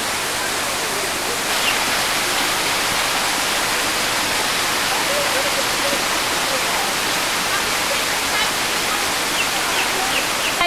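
Steady rushing of falling water, a constant hiss-like roar with faint voices in the background.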